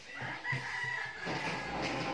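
A rooster crowing once, a call of nearly two seconds.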